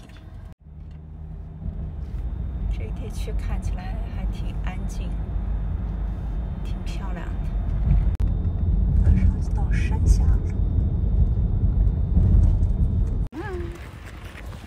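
Low, steady rumble of a car driving, road and motor noise that grows louder partway through, with faint voices over it. It cuts in after a brief dropout near the start and cuts off just before the end.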